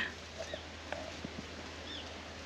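Quiet outdoor bush ambience with a faint steady hiss, a couple of short bird chirps and a few soft ticks.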